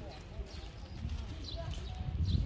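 Faint voices of people talking at a distance over a low, irregular outdoor rumble.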